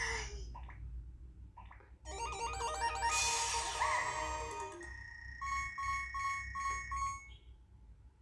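Electronic game sounds from a smartphone's speaker: a quick run of stepped synthesized notes about two seconds in, then five short evenly spaced beeps over a held steady tone.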